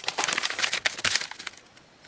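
A sheet of paper rustling as it is handled and turned over by hand, busy in the first second and then fading to quiet.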